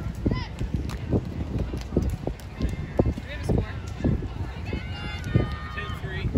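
Outdoor beach ambience: distant voices of people talking and calling out, over a run of irregular low thumps.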